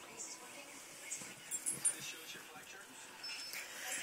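A dog whimpering quietly, with a few slightly louder short sounds about a second and a half in.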